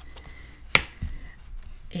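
Paper-craft album being handled: one sharp snap of card stock about three-quarters of a second in, then a softer tap, with faint paper rustle around them.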